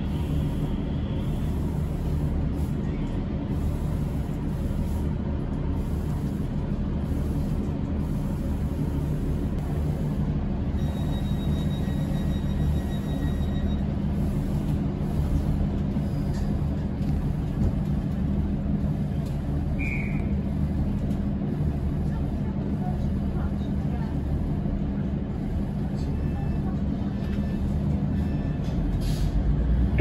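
Diesel engine idling with a steady low drone, heard from inside a standing train.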